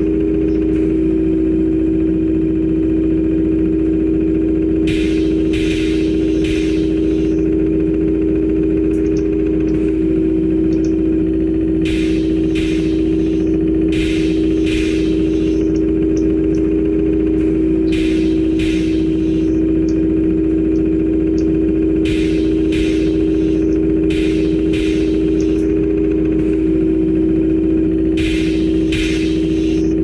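Machine-simulator sound effects of a box conveyor line: a steady motor hum, broken by a handful of short hisses of air as the line's pneumatic pushers fire.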